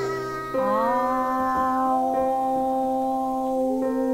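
A girl singing a long held vowel to piano accompaniment. A new note comes in about half a second in with a short upward slide, then is held steady until near the end.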